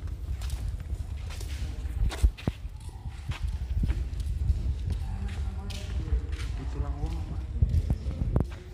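Footsteps of several people walking on a cave walkway, in short irregular steps over a steady low rumble. Faint voices join from about five seconds in.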